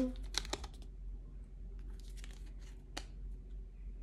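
Crinkling and clicking of a small perfume sample's packaging being handled: a cluster of short crinkles in the first second, then a few scattered ones and a sharper click about three seconds in.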